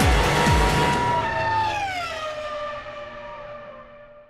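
Closing theme music: a beat with deep kick drums stops about half a second in, then a held chord slides down in pitch and fades away.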